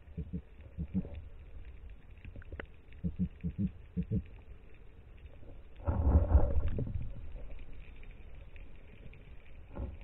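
Underwater noise through a camera housing mounted on a speargun: scattered low knocks in the first second and again around three to four seconds in, then a louder rushing rumble lasting about a second, about six seconds in.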